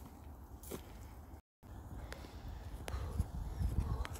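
Outdoor wind rumbling on the microphone, with a brief cut to silence about a second and a half in. After it comes the footfalls of a person running on grass, growing louder toward the end.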